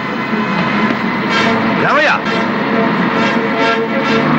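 Film action soundtrack: a man's shout rises and falls about two seconds in, over a van's engine, a few sharp hits and a background score that runs under it all.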